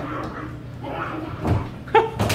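A whimpering, dog-like vocal sound, with a dull thump about one and a half seconds in.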